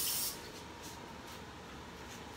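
A steady high hiss that cuts off abruptly about a third of a second in, followed by a few faint light clicks of a metal fork against a plate.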